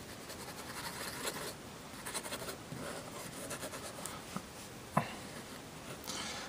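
Steel nib of a just-refilled Parker fountain pen scratching across paper in several short test strokes, writing only faintly because the ink has not yet fully reached the nib. A single sharp tap about five seconds in.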